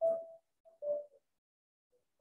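A faint steady tone in short broken snatches during the first second, then near silence.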